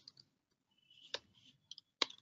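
A few faint computer keyboard keystrokes as a word is typed: one clearer click about a second in, then two softer ones near the end.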